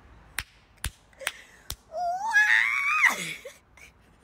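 A woman's high-pitched shriek, rising and wavering for about a second, in reaction to a fly in her hair. Four short sharp clicks come before it.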